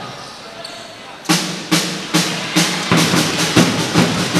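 Drums beating a steady rhythm of about three beats a second, starting a little over a second in.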